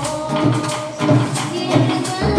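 Live Colombian folk music: tambora hand drums keep a steady beat with acoustic guitar strumming and a metal scraper, while a girl sings the melody.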